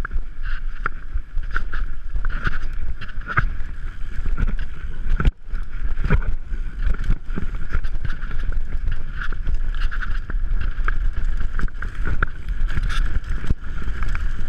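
Orange 5 full-suspension mountain bike rattling and clattering down a rough dirt trail at speed, with frequent sharp knocks from the bike over the bumps and a low rumble of wind on the camera microphone.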